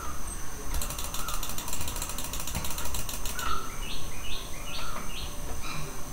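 Computer mouse scroll wheel ticking rapidly for a couple of seconds, starting just under a second in, then birds chirping over and over, short stepped calls.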